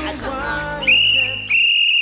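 Two blasts on a whistle, one steady high note each: a short one a little under a second in, then a longer one, over the tail of background music.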